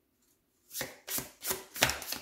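Oracle cards being shuffled by hand: a run of short, crisp strokes about three a second, starting under a second in.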